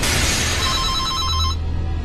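A telephone ringing with a short warbling trill for about a second, over the fading tail of a loud hit and then a low steady rumble.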